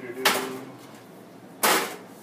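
Seasoning shaker shaken over raw pork chops: two short, sharp rattling shakes about a second and a half apart.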